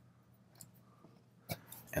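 Near silence, broken by one short click about one and a half seconds in as the cotter pin that holds the firing pin is worked out of the Daewoo K1A1's bolt carrier.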